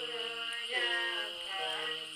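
Nùng women singing a traditional folk song without instruments, their voices holding long, drawn-out notes that slide from one pitch to the next.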